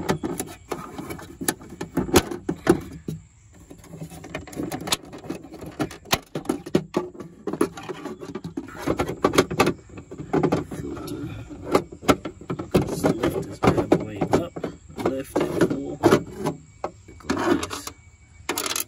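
Hard plastic glove box parts in a Toyota Tundra clicking, knocking and rubbing as they are pulled and handled, with many sharp clicks.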